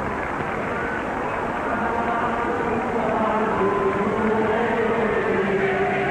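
A choir singing a slow chant in long held notes, rising out of a steady rushing noise about two seconds in and growing clearer toward the end.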